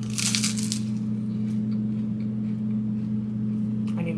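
A crisp crunch as a puffed rice cake is bitten into, lasting under a second, followed by faint chewing. A steady low hum sits underneath.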